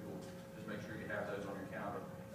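Indistinct male speech in a small room, too faint or unclear to make out words.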